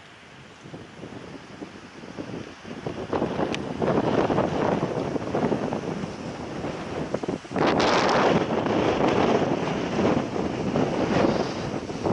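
Wind buffeting the camera's microphone, a rumbling noise that gusts up about three seconds in and again more strongly near eight seconds.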